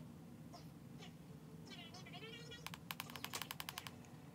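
A makeup brush tapping powder onto the face, heard as a quick run of about ten light clicks near the three-second mark, over a faint low room hum.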